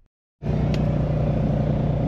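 Semi truck's diesel engine running steadily, a low even rumble heard from inside the cab. It cuts in abruptly about half a second in, after a brief silence.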